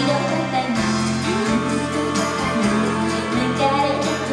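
A woman singing a pop song live into a handheld microphone, with instrumental accompaniment, the melody sliding and held notes throughout.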